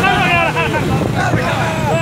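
Several men's voices talking loudly and laughing over the steady low rumble of a moving motorcycle and wind.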